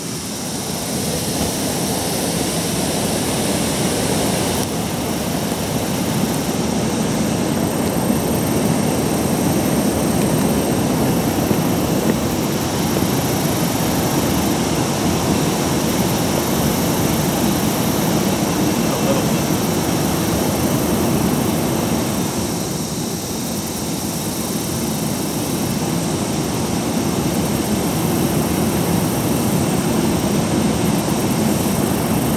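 Steady, loud roar of rushing water, such as water pouring through a river lock and dam, easing slightly for a moment past the middle.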